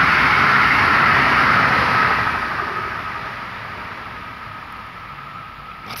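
A passing vehicle: a steady rush that is loud at first and fades away over the next few seconds.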